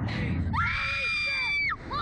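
Slingshot ride riders screaming as they are launched upward: a low rush of noise, then one long high scream held for about a second.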